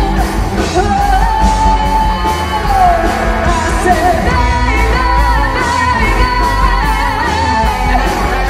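Live rock band playing: a female lead singer holds long, high notes that bend in pitch, over drums with cymbals, electric bass and electric guitar.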